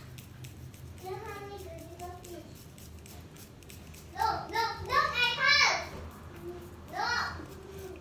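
Young children's voices talking and babbling in short bursts, loudest about four to six seconds in, over a steady low hum.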